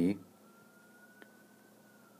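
A faint high tone that glides slowly up and then back down in pitch, with one light tap about a second in, which fits a stylus on the tablet screen while the label "6'" is written.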